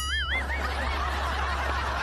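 A comic sound effect: a short warbling tone that wavers up and down and fades within half a second, followed by a steady, breathy stifled snicker.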